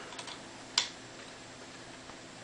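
A few small clicks, the sharpest just under a second in, from wire connectors being handled and unplugged on the CD laser unit of a Bang & Olufsen Beosound 3000.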